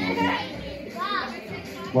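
Children's voices chattering and calling out, one voice rising and falling about a second in.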